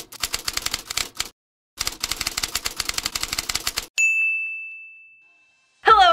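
Typewriter sound effect: two runs of rapid key clacks with a short pause between them, then a single bell ding about four seconds in that rings on and fades out.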